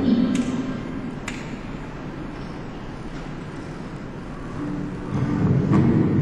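A lull in the narration: steady background hiss and low hum of an old recording, with two faint clicks in the first second and a half. A voice starts again near the end.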